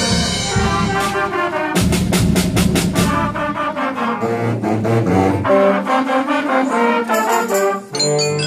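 School concert band playing, with trombones and trumpets to the fore. A run of quick snare drum strokes comes in about two seconds in.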